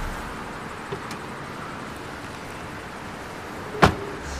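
A car door of a Hyundai Elantra taxi shut with a single sharp slam near the end, over a steady outdoor background hiss. A faint click comes about a second in.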